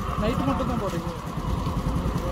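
Heavy truck's diesel engine idling: a steady low rumble with a fine even pulse, and quiet voices under it.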